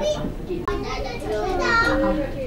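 Indistinct voices talking, with a higher-pitched voice near the end.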